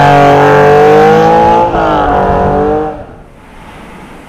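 1998 Porsche 911 Carrera (996) water-cooled 3.4-litre flat-six accelerating away: the engine note climbs, drops in pitch a little under halfway through, then fades out about three seconds in.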